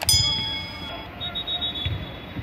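A sharp click, then a steady alarm-like beep of several tones lasting about a second, followed by a shorter, higher fluttering tone. Faint voices and outdoor noise run underneath.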